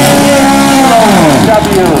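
Drag-racing VW Beetle's air-cooled flat-four engine revved in long swells that rise and fall, the second one dropping away near the end.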